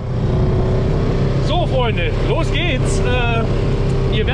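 Polaris RZR side-by-side's engine idling steadily, fading in at the start, with a man's voice over it from about halfway through.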